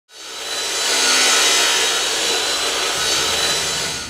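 A power tool grinding or cutting metal: a loud, steady, harsh grinding noise that swells in over the first half-second and cuts off suddenly at the end.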